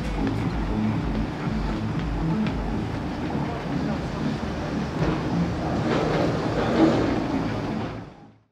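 Indistinct voices of people talking over a low, uneven background rumble.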